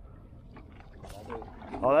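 Low, steady background wash of sea and wind around a small boat at sea, with faint voices in the middle; a man exclaims "Oh" at the very end.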